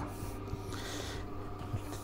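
Plastic dough scraper scraping and cutting through bread dough on a steel worktable, with a brief soft hiss about a second in, over a faint steady room hum.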